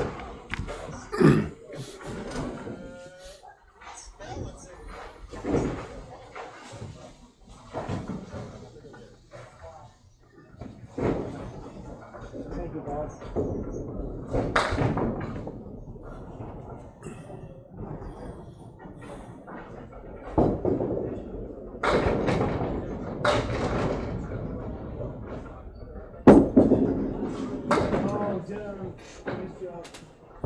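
Candlepin bowling alley background: scattered knocks, thuds and slams of balls and pins on the lanes, with voices in the hall. The sharpest knocks come about a second in and near the end.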